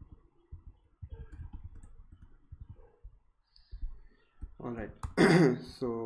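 Soft, rapid clicks of a computer keyboard being typed on. About four and a half seconds in, a man makes a loud, short nonverbal vocal sound with a cough-like start.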